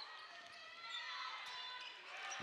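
Basketball shoes squeaking on a hardwood court as players cut and shift, in several overlapping high squeals that slide down in pitch. There are a couple of faint ball bounces.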